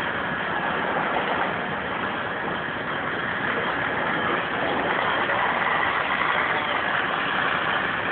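Fire engine running steadily, a continuous noisy drone with no break.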